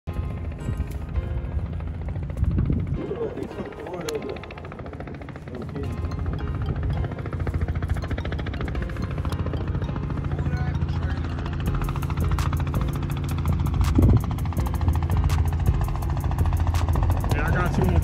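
Light two-bladed helicopter flying in and passing overhead: a steady low engine drone with a rapid, even beating of the rotor blades that grows stronger in the second half.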